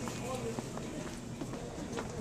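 Faint voices in the background with light footsteps and the rustle of a handheld phone being moved.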